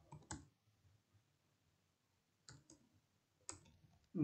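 Faint computer keyboard keystrokes: two key clicks at the start, then a few more near the end, with near silence between.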